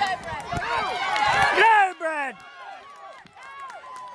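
Several spectators shouting and cheering at once, with high-pitched, overlapping voices. The shouting is loud for about two seconds, then drops to fewer, quieter calls.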